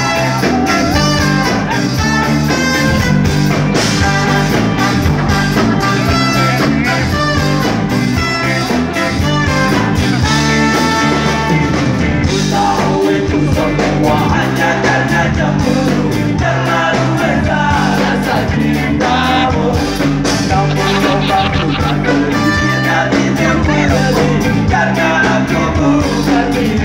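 Live ska band playing a song: a lead singer over electric bass, drum kit and a trumpet and trombone horn section, loud and continuous.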